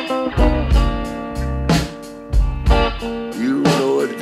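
Delta blues electric guitar playing an instrumental passage with no vocals, with some gliding notes, over a beat of low thumps.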